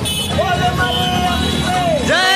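A voice singing long held notes that bend smoothly in pitch, over steady low street noise.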